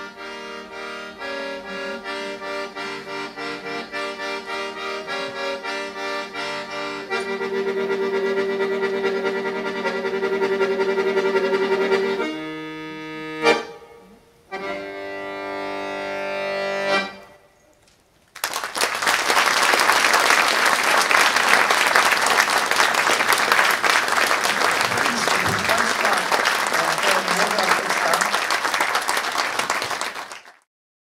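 Accordion playing the close of a piece: repeated chords, then held chords, a brief break, and a final held chord that stops a little past halfway. After a moment of quiet, audience applause follows.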